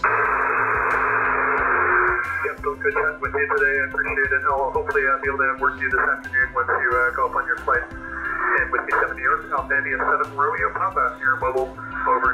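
A man's voice coming in over 10-metre upper-sideband radio through the transceiver's speaker, narrow and hissy. The first two seconds hold only receiver hiss before the voice starts.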